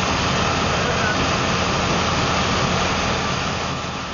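Steady low engine hum over street noise, as of a van idling, beginning to fade near the end.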